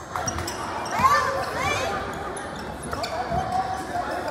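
Live basketball play on a gym court: a ball bouncing on the floor with a few sharp knocks, short high squeaks like sneakers on the court, and players' voices calling out in a large echoing gym.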